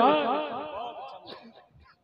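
A shouted slogan call on the public-address system trailing off in quick, evenly spaced echoes that fade away over about a second and a half.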